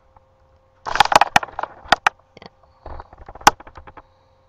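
A scatter of sharp clicks and clatter from a computer mouse being clicked and handled on a desk, bunched about a second in and again around three and a half seconds, over a faint steady electrical hum.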